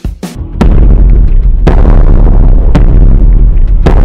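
Sound effect of a giant dinosaur's footsteps: loud booming thuds about once a second over a deep, continuous rumble, starting about half a second in.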